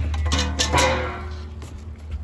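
Metal kennel gate being opened: several clanks and rattles of the latch and welded-wire frame, the loudest just under a second in, followed by a brief metallic ringing.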